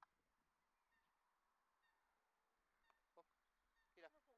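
Near silence, with a few faint, short pitched animal calls and a soft click at the start. A slightly louder call with a falling pitch comes right at the end.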